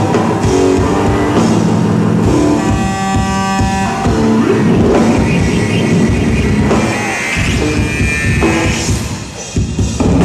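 Live electric bass guitar and drum kit playing loud, dense, fast music, recorded from within the audience. A bright, sustained passage stands out about three seconds in, and the sound thins briefly just before the end.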